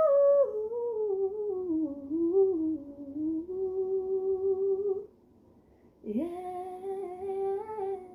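A woman's unaccompanied voice humming a wordless melody: a slow stepwise fall in pitch, then a held note. After a one-second break about five seconds in, the voice slides up into another held note.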